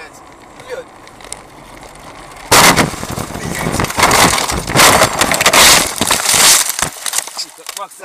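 Car crash: a sudden loud impact about two and a half seconds in, followed by about four seconds of repeated crunching impacts, scraping and breaking glass that die away near the end.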